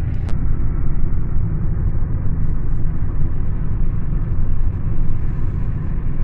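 A moving car heard from inside the cabin: steady low rumble of engine and road noise. There is a single short click just after the start.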